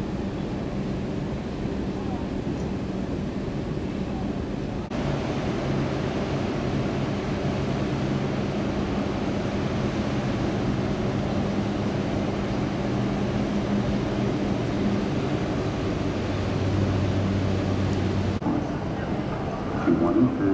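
Steady wind and low machinery hum on the open deck of a cruise ship, with faint passenger voices. The background changes abruptly twice, about five seconds in and near the end.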